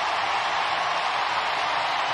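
Baseball stadium crowd cheering and applauding steadily in an ovation for a grand slam home run.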